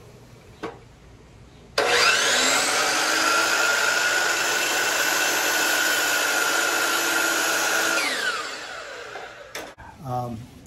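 DeWalt sliding compound miter saw switched on: the motor and blade spin up with a rising whine, run steadily for about six seconds, then wind down with a falling whine after release.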